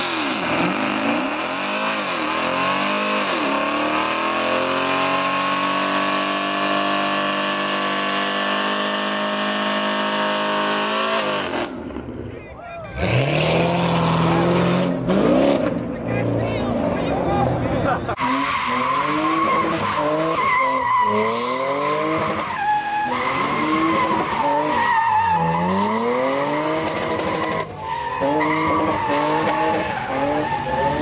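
Muscle-car engines during burnouts, with tyres squealing as they spin. For the first twelve seconds one engine climbs and is then held at high, steady revs. After a sudden change, an engine is revved again and again in rising sweeps, one every second or two, over continuing tyre squeal.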